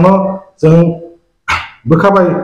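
A man's voice speaking in short phrases with brief pauses between them.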